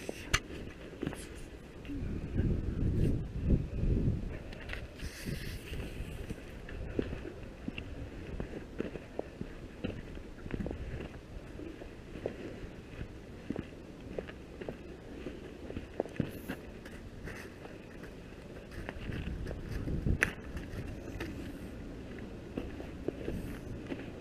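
Footsteps on a dirt driveway with clothing rustling against the camera, broken by a few low rumbles about two to four seconds in and again later on.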